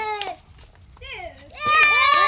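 Children's voices: a long, high-pitched held cry from a child trails off just after the start, with a light knock. After a quieter stretch of low chatter, another long high cry begins in the last half second.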